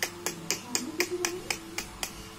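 Quick, sharp clicks made by a person, evenly spaced at about four a second, over a faint steady low tone.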